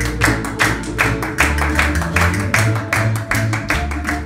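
Live early-music ensemble playing a Spanish-style Baroque dance: plucked strings strummed in a quick, even rhythm of about five strokes a second over a low bass line.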